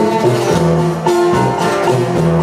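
Live norteño band playing an instrumental passage, a plucked guitar to the fore over a steady bass line.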